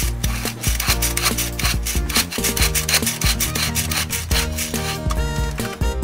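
Hand-cranked plastic toy blender turned round and round, a fast repeated rasping grind as its blade chops the contents. The grinding stops about five seconds in, with cheerful background music underneath throughout.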